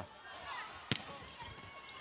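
Faint arena crowd noise with a single sharp smack of a volleyball being struck in a rally, about a second in.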